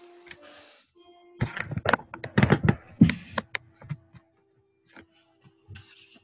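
Faint piano practice coming through a video-call microphone, a few sustained notes. About a second and a half in, a burst of loud knocks and clatter lasts about two seconds, followed by a few scattered clicks.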